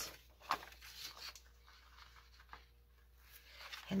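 Scissors snipping a thin paper coffee filter's ruffled edge: a few short, sharp cuts in the first second, then fainter paper handling.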